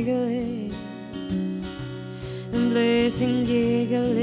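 Acoustic guitar strummed with a woman singing over it; the voice drops away for a moment around the middle and comes back in about two and a half seconds in.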